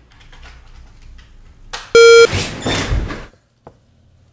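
A single short, very loud electronic beep, a buzzy steady tone with many overtones lasting about a third of a second, about halfway in. It is followed by about a second of rough noise and a single sharp click near the end, with faint clicking before the beep.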